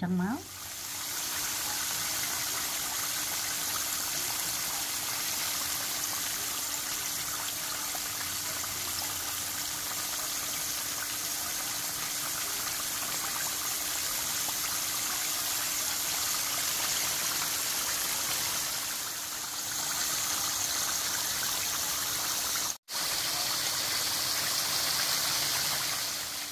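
Flour-dredged chicken deep-frying in hot oil in a skillet: a steady, even sizzle with a faint low hum beneath, cut off for an instant once near the end.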